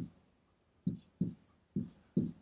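Dry-erase marker writing on a whiteboard: three short strokes, the first about a second in and the other two following within a second, as hi-hat notes are jotted onto the score.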